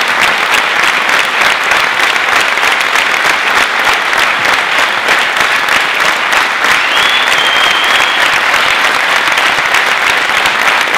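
A large theatre audience applauding steadily, with dense, continuous clapping. A brief high steady tone sounds about seven seconds in.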